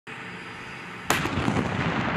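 A single tank main-gun shot about a second in: a sudden, loud blast followed by a long rumbling tail, over a steady background noise before it.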